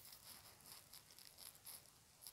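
Near silence, with faint, evenly repeating high chirps typical of crickets.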